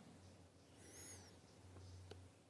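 Near silence: faint room tone with a low hum, and a brief, faint high-pitched chirping about a second in.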